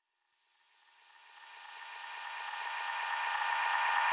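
Electronic music fading in from silence, a build-up that swells steadily louder from about a second in.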